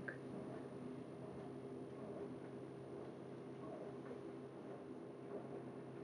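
Quiet room tone with a faint steady hum and no distinct events.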